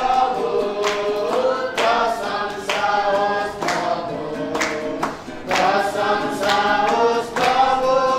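A group of voices singing together, a song with long held notes.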